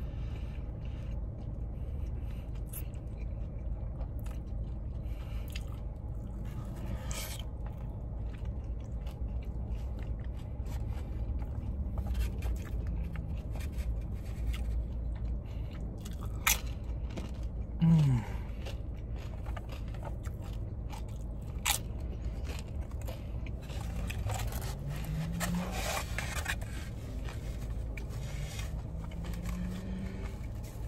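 A person chewing and biting into soft tacos close to the microphone, with wet mouth sounds and a few small clicks and scrapes from handling the food. A steady low hum runs underneath, and a short 'mm' of enjoyment comes about two-thirds of the way through.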